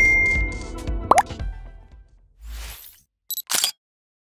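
Short synthesized logo sting: an impact at the start rings out with a bright held tone and fades over about two seconds, a quick upward pop comes about a second in, then a soft whoosh and two short high digital blips near the end.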